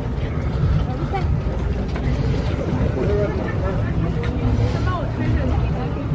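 Wind buffeting the camera microphone, a steady low rumble, with faint voices of other people in the background.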